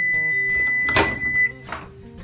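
Microwave oven's end-of-cycle beep: one long steady high tone as the timer runs out, stopping about one and a half seconds in. About a second in there is a sharp click as the door is released and opened, with a couple of lighter knocks after it.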